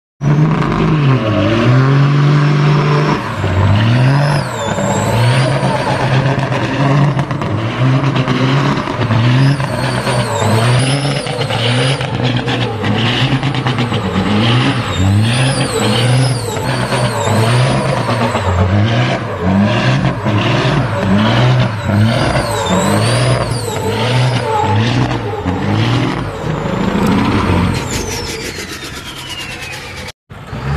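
Long-nose semi truck's diesel engine revved hard in repeated surges about once a second during a burnout, its pitch climbing and dropping again and again. A high whistle rises and falls with the revs, and near the end a whistle falls away as the revs drop.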